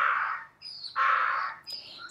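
A donkey braying in two breathy, noisy gasps: the first fades out about half a second in, the second comes about a second in.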